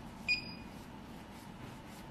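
A single short electronic beep, a high tone with overtones, about a third of a second in, over faint room noise.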